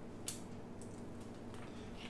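Faint clicks of a thin plastic container lid being handled, two short ticks within the first second over low room tone.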